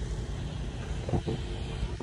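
Low, steady rumble of a motor vehicle running amid street noise, with a brief faint sound about a second in.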